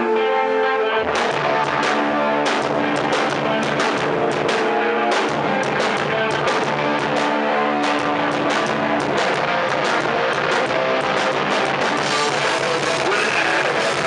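Hardcore punk band playing live: an electric guitar riff alone, then the drums and the full band come in about a second in and play on loud and fast.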